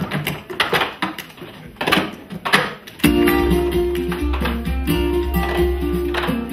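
Plastic sport-stacking cups clattering in quick, irregular clicks as they are stacked and unstacked on tabletops. About three seconds in, guitar music with a steady bass starts abruptly and carries on.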